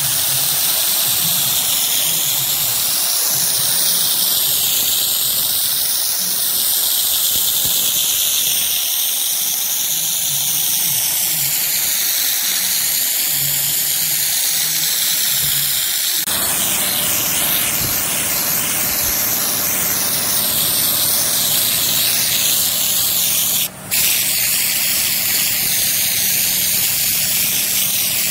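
Compressed-air spray gun on a bottle of Raptor bed-liner coating, spraying in a steady loud hiss whose tone wavers as the gun sweeps. It cuts out for a moment about three-quarters of the way in.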